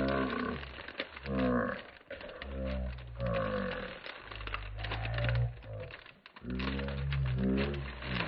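Clear plastic packaging and small zip-bagged drill packets crinkling and clicking as they are handled. A louder, low, wordless voice-like sound with gliding pitch comes and goes over it.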